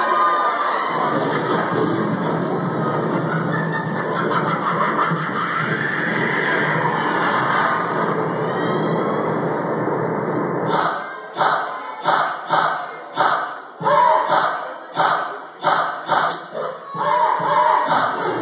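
A loud, steady wash of crowd noise and music; about eleven seconds in it gives way to a step team's unison stomps and claps, a sharp rhythm of about two hits a second, with shouted chanting between the hits.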